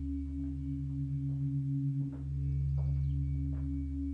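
A low, steady droning hum of a few stacked tones, which dips and starts again about halfway through, with a few faint soft knocks over it: an ominous sound-design drone from a horror-thriller film soundtrack.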